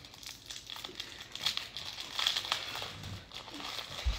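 Light, irregular crinkling and small clicks from hands handling Christmas ornaments and their wire hangers.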